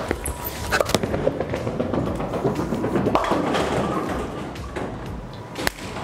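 A bowling ball thrown down a lane: a thud as it lands about a second in, a rolling rumble, then the pins crashing, with music playing in the bowling alley.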